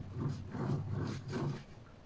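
Rope being wound around the shaft of a homemade generator built from a fridge compressor stator, a series of soft rubbing and rustling strokes that fade toward the end, over a low steady hum.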